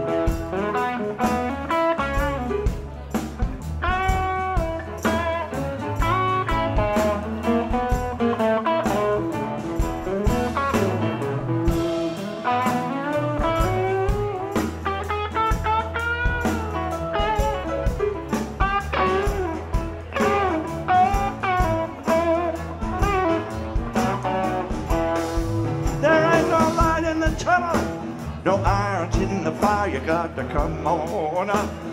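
Live rock band playing an instrumental passage between verses: electric guitar, Roland keyboards, bass guitar, drums and percussion, with a melodic lead line whose notes bend in pitch over a steady bass and drum groove.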